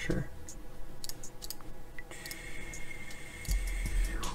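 Background music with a steady ticking beat; a held high note comes in about halfway and slides down at the end, and deep bass enters shortly before. Mouse clicks sound over the music.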